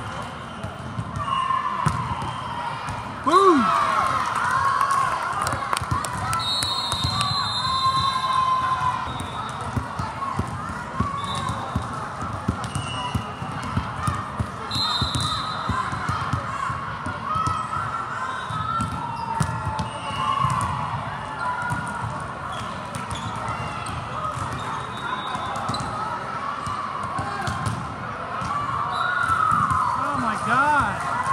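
Volleyball rally in a large, busy hall: ball hits and players' shouts over a steady murmur of crowd chatter, with a loud shout about three seconds in.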